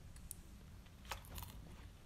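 Faint small clicks and handling noises as a snack is picked from its packet, against a quiet room.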